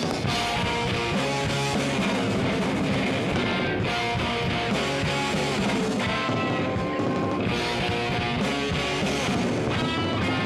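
Live rock band playing: electric guitars strummed over a drum kit, running steadily without a break.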